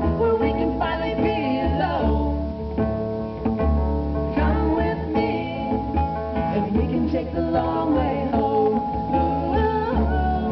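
Live band music from a keyboard-led duo, with sustained keyboard chords and some wavering held notes.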